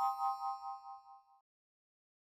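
A bright chime sound effect: a chord of ringing tones struck once, wavering as it fades out within about a second and a half.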